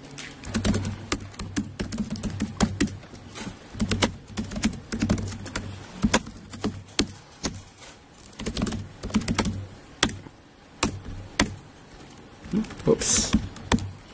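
Typing on a laptop keyboard: quick, irregular runs of keystrokes with short pauses between them as commands are entered into a terminal.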